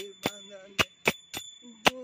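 Small metal hand cymbals, manjira-style, struck in a rhythmic pattern, each stroke ringing, accompanying a man's sustained devotional singing that is soft in the middle and swells again near the end.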